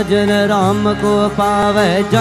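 A male voice singing "Krishna" in a Hindu devotional chant (kirtan), the pitch bending on long held notes over a steady harmonium drone, with regular percussion strokes.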